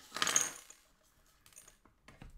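Small screws, standoffs and a circuit board clattering as they are swept off a digital scale's metal platform onto the table: a short burst of rattling with a brief metallic ring in the first half second, then a few faint clicks.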